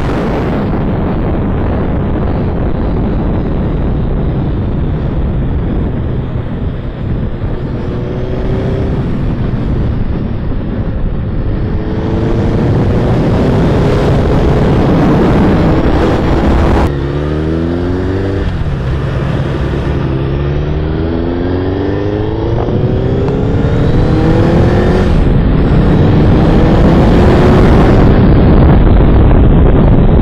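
Suzuki Hayabusa's inline-four engine pulling hard, its pitch rising in several sweeps through the gears. A heavy rush of wind on the microphone at riding speed runs under it. The engine grows louder toward the end.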